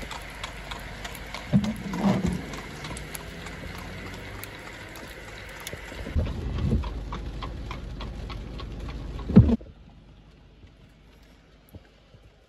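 Hooves of a horse pulling a buggy clip-clopping on wet pavement over steady rain and road hiss. The sound drops away suddenly near the end.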